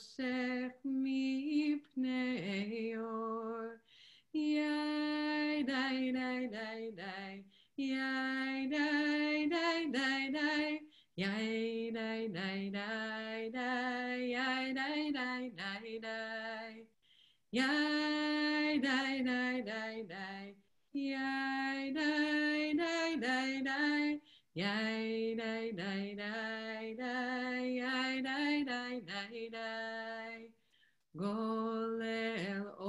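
A woman singing a slow, unaccompanied melody solo, in phrases of a few seconds with short breaks between them.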